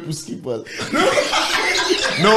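Several men laughing and chuckling together, starting about half a second in.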